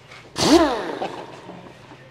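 A man's single short vocal sound, about half a second long, rising then falling in pitch, about half a second in; otherwise low background.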